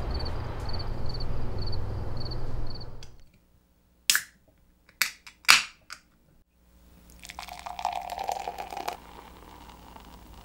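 Music ends about three seconds in. Then come three sharp metallic clicks as an aluminium beer can's pull tab is worked and cracked open, followed a second or two later by beer pouring from the can into a glass mug, with a fizzing, splashing rush that fades into a gentler trickle near the end.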